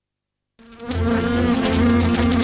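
Black soldier flies buzzing: a steady, droning buzz that sets in about half a second in, after a moment of silence.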